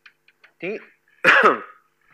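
A man coughing to clear his throat in two bursts: a short one just after the start, then a louder, longer one about halfway through.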